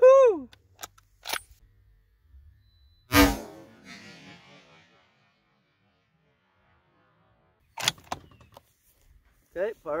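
Metallic clicks and clacks of a Mossberg Patriot bolt-action rifle being handled and reloaded between shots: a couple of sharp clicks early, one loud knock about three seconds in, and another quick burst of clicks near the end.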